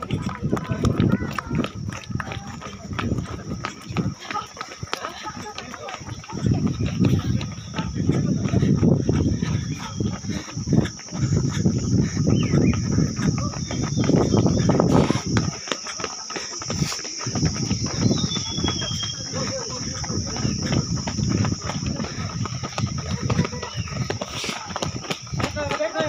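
Running footsteps of several runners on an asphalt road, heard from a phone carried by one of them at a jog. Heavy low rumble from the carried phone swells and fades, over a steady high hiss.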